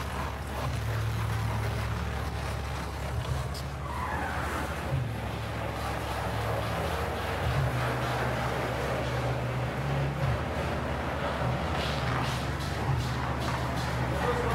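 Diesel engine of a compact track loader running, its pitch stepping up and down with the throttle as the machine works, with a whine that falls in pitch about four seconds in.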